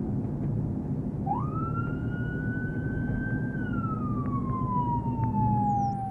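Police car siren winding up about a second in, holding a high wail, then slowly falling away near the end, over the steady low drone of the moving squad car's engine and road noise.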